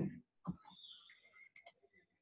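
Faint clicks in a pause between words: a soft one about half a second in and a quick sharp pair about a second and a half in.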